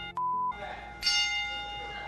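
A wrestling ring bell struck once about a second in and ringing on, slowly fading, as one stroke of a ten-bell salute. Just before it there is a short high beep.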